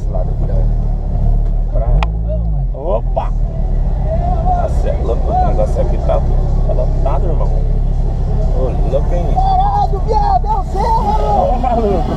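Audi R8 engine running with a steady low rumble, heard from inside the cabin while the car rolls slowly. Untranscribed voices come in over it from about four seconds in.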